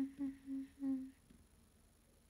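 A young woman's voice giving four short closed-mouth hums at one steady pitch, a murmured 'un, un' with a little laugh, over the first second or so.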